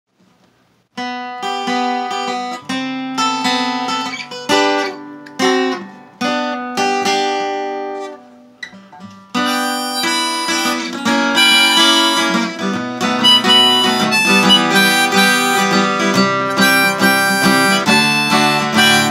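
Diatonic harmonica and fingerpicked acoustic guitar playing a blues intro. The harmonica starts about a second in with held notes and short breaks, drops out briefly around the middle, then comes back with fuller, continuous playing over the guitar.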